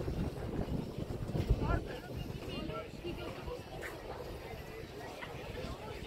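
Outdoor ambience: wind buffeting the microphone in uneven low thumps through the first two seconds, then a steadier low rush, with faint voices of people in the background.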